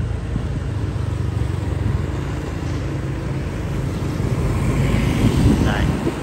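Steady low rumble of a motorbike ride: engine and road noise, growing a little louder and brighter near the end.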